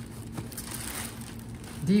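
Clear plastic bonnet sheeting crinkling and rustling as hands move inside it.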